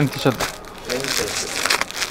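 Crinkling of a garment's clear plastic packaging as it is handled and pushed back into its cardboard box.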